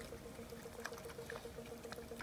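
Faint scattered clicks and rustles from piglets rooting in dirt and dry leaves, over a steady, rapidly pulsing hum.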